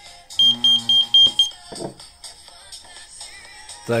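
Airpage pager powering up on a fresh battery: five rapid high-pitched beeps, about four a second, over a low steady buzz, lasting about a second.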